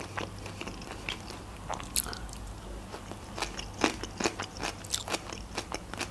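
Close-miked chewing of a sushi roll: soft, irregular wet mouth clicks and smacks, the sharpest about two seconds in, over a low steady hum.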